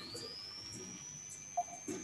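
Faint countdown-timer sound: light ticks about twice a second under a thin, high whistle-like tone that glides up at the start and then holds steady.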